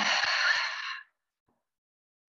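A woman's long, breathy exhale through the mouth, an audible sigh at the end of a deep yoga breath, fading out about a second in.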